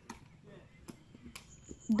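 Three sharp cracks of takraw balls being kicked, well under a second apart.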